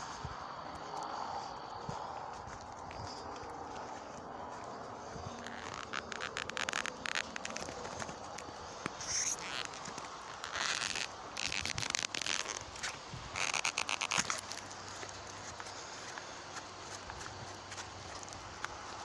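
Crackling, scraping handling noise and footsteps from someone walking with a handheld phone. The crackle comes in clusters, starting about a third of the way in and stopping a little before the end, over a low steady background.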